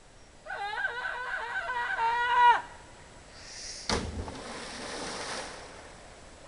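A long held yell of about two seconds, loudest at its end, then a sharp splash just before four seconds in as a person jumping off a rock hits the pond, with water hissing and spattering for about a second and a half after the impact.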